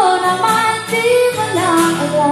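A woman singing a slow song with an acoustic guitar strummed alongside her.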